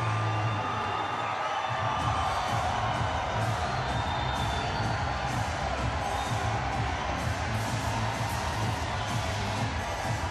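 Fighter walkout music with a heavy bass beat playing over an arena's sound system, with a crowd cheering.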